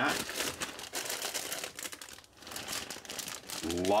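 Clear plastic bags around model-kit sprues crinkling as they are handled and shuffled, an irregular crackle throughout.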